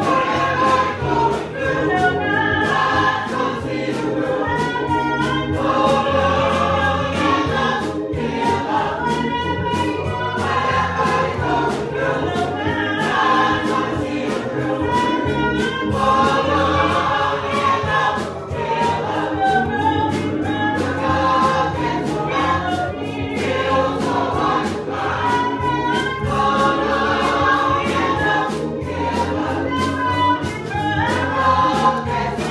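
Church choir singing a gospel song together, with a steady beat of about two strokes a second under the voices.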